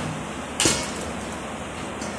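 Flour being sifted through a hand-shaken steel sieve over a steel plate, with one sharp metallic knock a little over half a second in.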